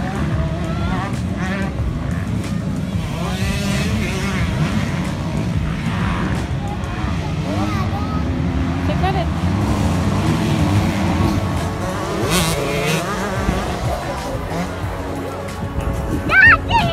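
Motocross motorcycle engines running on the track, a steady low drone with wavering pitch, mixed with the background voices of a crowd.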